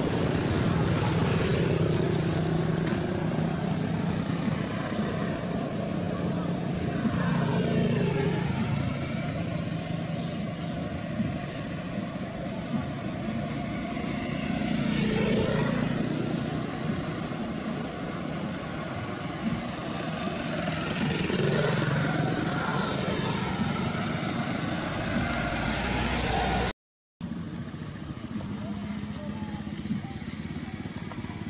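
Steady outdoor background of passing motor vehicles, with indistinct voices now and then; it cuts out briefly near the end.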